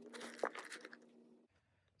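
Handful of dry, crumbly worm-bin bedding falling and being sprinkled into the bin, a light crackling rustle that fades out about a second and a half in.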